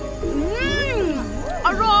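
A cartoon child's voice gives a long rising-and-falling 'mmm' of delight while tasting a sweet, then a shorter one, over light background music.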